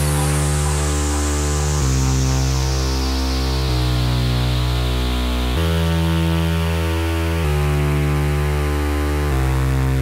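House-meets-electro dance music in a breakdown: sustained synth chords over a heavy bass, changing about every two seconds, while a noise sweep falls slowly in pitch. No drum beat is heard.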